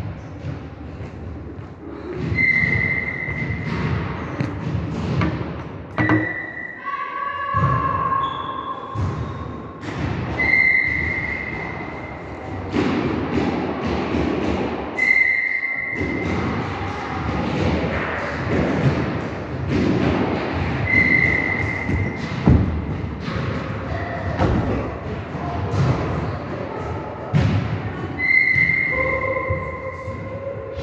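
Repeated thuds echoing in a large hall, mixed with short high-pitched squeaks that recur every few seconds.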